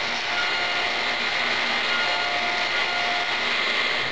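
Table saw running steadily with a thin blade, cutting a shallow slot in a small wooden block: an even whirring noise with a faint whine over it.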